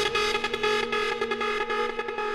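Hard house dance music from a DJ mix: fast, evenly repeating synth stabs over held synth tones, with little deep bass under them.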